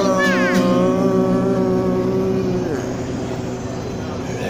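A strummed chord on an acoustic guitar rings out under a long note held by a male singer. The note bends slightly, then ends with a downward slide about two and a half seconds in, and the ringing dies away.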